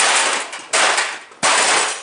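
Three loud hammer blows on a gutted metal computer case, about 0.7 seconds apart, each a sharp crack that fades over half a second.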